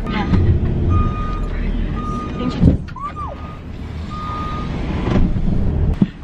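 A passenger van's reversing alarm sounding repeated half-second beeps on one steady high tone over the low rumble of the van's engine as it backs up, heard from inside the cabin. A short gliding squeal comes about halfway through.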